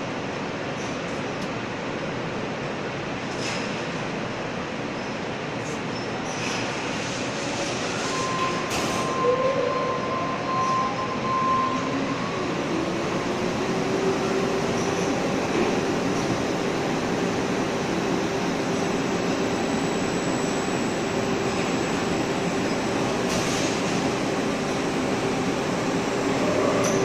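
Shot blasting machine running with a steady, dense mechanical noise. About twelve seconds in, a motor whine rises in pitch and then holds steady as the machine comes up to speed while it is switched on from its control panel.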